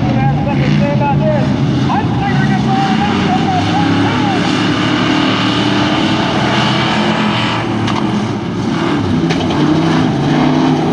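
A pack of pure stock race cars running at racing speed on a dirt oval: a loud, steady engine drone whose pitch rises and falls as the cars go through the turn.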